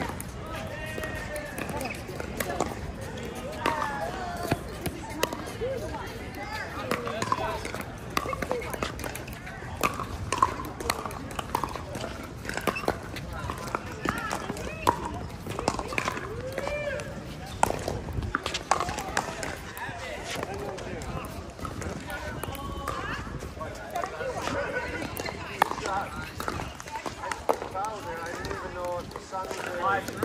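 Many voices chattering at the outdoor pickleball courts, with a few scattered sharp pops of pickleball paddles hitting balls.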